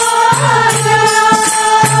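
Devotional bhajan to Shiva: a singer holds one long note over a steady low drone, with light percussion strokes keeping time.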